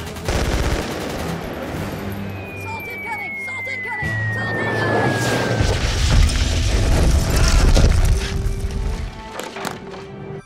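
Battle-scene sound effects: gunfire crackling over music, with a thin falling whistle over a few seconds, like an incoming shell. A long, heavy explosion rumble follows about five and a half seconds in.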